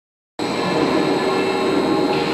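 SYA-110 power press running idle: a steady machine hum with a thin high whine, with no press stroke, starting just under half a second in.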